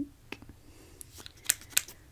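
Plastic mascara tube handled close to the microphone: a brief scrape, then two sharp clicks near the end.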